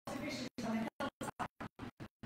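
A woman's speaking voice, chopped into fragments as the audio cuts out to silence several times a second.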